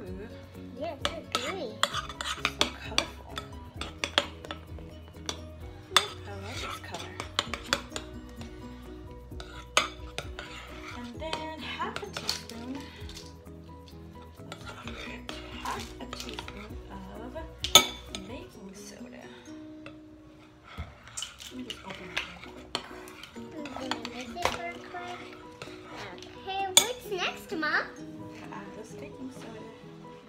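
A metal spoon stirring thick slime in a ceramic bowl, clinking and scraping against the bowl in irregular strokes, with a few sharper clinks.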